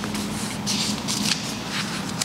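Thin book pages being leafed through close to a lectern microphone: a run of short paper rustles while a passage is searched for.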